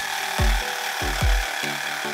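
Electric jigsaw cutting through a walnut laminated board, a steady buzzing saw noise. Background music with a deep bass beat runs underneath.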